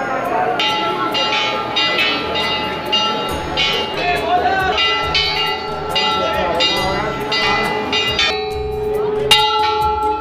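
Brass temple bells rung over and over, their long ringing tones overlapping, with a fresh strike near the end, over the voices of a crowd.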